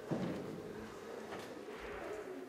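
Indistinct room sound of a busy hall: faint voices and small handling noises, with a sudden knock just after the start and a couple of faint clicks later on.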